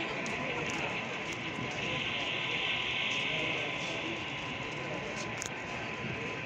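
Model train rolling along the layout track, a steady running hiss that grows louder about two seconds in and eases off, over background chatter.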